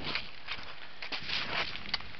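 Footsteps rustling and crunching in dry fallen leaves, a few steps in a row.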